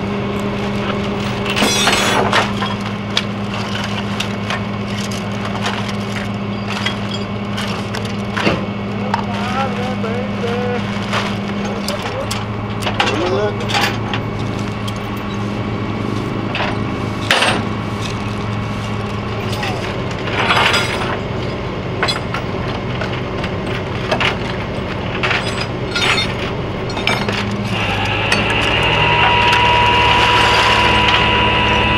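A vehicle engine idling with a steady low hum, under scattered sharp clanks, knocks and scrapes of metal and debris, with faint voices. Near the end a steady higher whine joins in and the sound grows louder.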